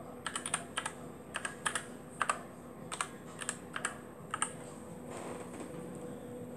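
Computer keyboard keys clicking as a terminal command is typed: around fifteen irregular keystrokes that die away about four and a half seconds in.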